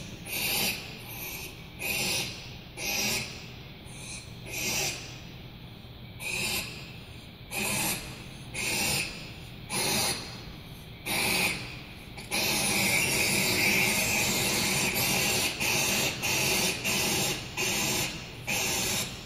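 Barn owl chicks giving raspy, hissing calls, about one a second at first, then from about twelve seconds in a near-continuous rasp broken by short gaps. These are the nestlings' sibling-negotiation calls, heard played back over a hall's loudspeakers.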